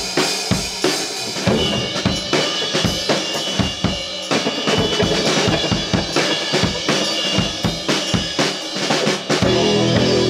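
Live rock band playing, led by the drum kit: a steady beat of bass drum and snare hits with guitars and bass underneath. Near the end the band comes in with sustained guitar chords.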